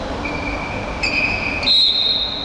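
Referee's whistle in a sports hall over steady hall noise: thin, steady high whistle tones start about a quarter of a second in, and a louder, higher blast comes near the end.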